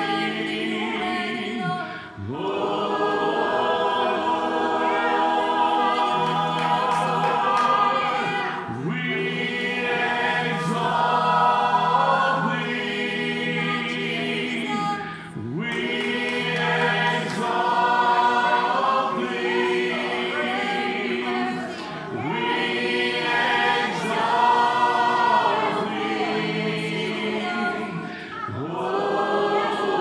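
Voices singing a slow worship chorus together in phrases of about six seconds, with short breaks between the lines.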